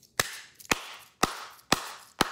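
Hand claps: four sharp, evenly spaced claps, about two a second.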